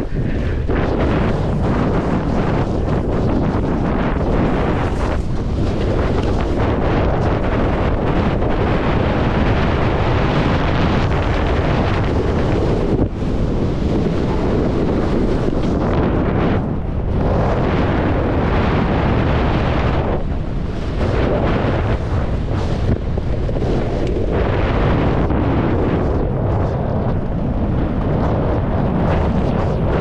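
Wind rushing over a GoPro action camera's microphone as a snowboard rides fast downhill, mixed with the board scraping through chewed-up snow. The noise is loud and continuous, with a few brief lulls.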